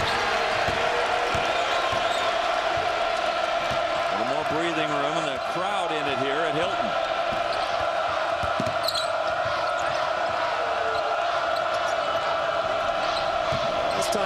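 A basketball being dribbled on a hardwood court over a steady murmur of a large arena crowd.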